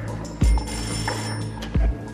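Old Soviet telephone's bell ringing for about a second, over background music. Two deep thumps about a second and a half apart are the loudest sounds.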